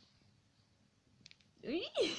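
Quiet room tone with a few faint short clicks just past halfway, then a person's voice starting up near the end.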